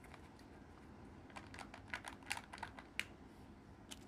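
Faint, quick plastic clicks and crinkles as a Kinder Joy egg's plastic toy half and its sealed lid are handled, bunched in a rapid run through the middle with a sharper click near the end.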